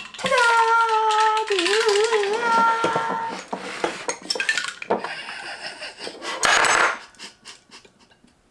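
Ice rattling and clinking inside a stainless-steel cocktail shaker as it is shaken by hand. Over the first three seconds a voice holds a wavering sung note, and about six and a half seconds in there is a short, loud rattling burst.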